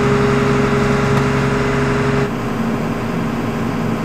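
Self-propelled crop sprayer's diesel engine idling steadily, just running after a hard start that takes about ten turns of the key. About halfway through, the steady hum thins as its strongest tones drop away and it gets a little quieter.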